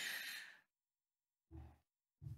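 A speaker's quiet exhaled breath into a close lectern microphone during a pause, fading out within about half a second. Then near silence, broken by a brief faint low sound about a second and a half in.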